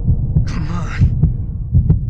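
Heartbeat sound effect: a run of deep, low thumps, some coming in quick pairs. A brief breathy sound comes about half a second in.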